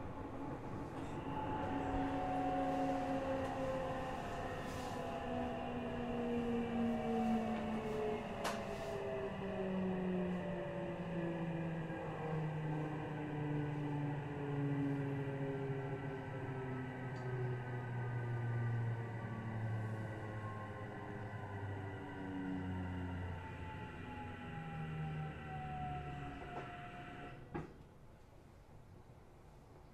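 Tokyu 3000-series train's Toshiba IGBT VVVF inverter and traction motors whining under regenerative braking, several tones falling steadily in pitch as the train slows. The whine carries on down to standstill and cuts off with a click near the end as the train stops.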